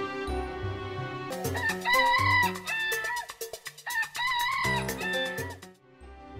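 A rooster crowing twice, each crow about a second long, over background music.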